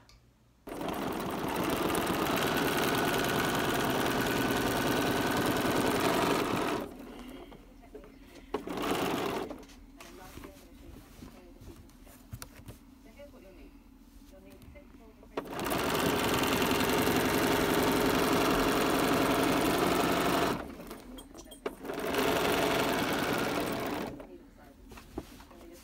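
Domestic sewing machine free-motion quilting with a darning foot and dropped feed dogs, the needle running fast in runs of several seconds with pauses between as the quilt is repositioned along the ruler.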